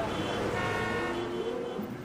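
Closing logo sting of a podcast: a few held, horn-like tones come in about half a second in, with the low tone changing pitch about a second in and again near the end.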